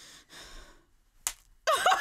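A hard-boiled egg struck once against a man's head: a single short, sharp knock about a second in, after a breath. Loud laughing exclamation breaks out just after it, near the end.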